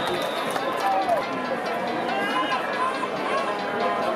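Spectators in the stands of a football stadium: many voices shouting and cheering at once over a steady crowd hubbub, with no single voice clear.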